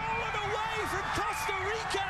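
Stadium crowd cheering steadily after a stoppage-time equalising goal, with a man's excited, high-pitched voice carried over the noise.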